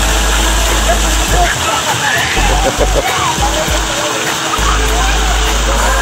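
Water pouring down steadily from an overhead splash-pad fountain and splashing into shallow water, with children's voices in the background.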